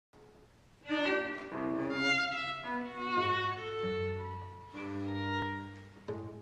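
A violin and cello playing a duo: sustained, overlapping bowed notes that begin about a second in, with the cello holding a low note from about three seconds.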